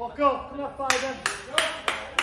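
A loud shout, then a run of sharp hand claps, about three a second.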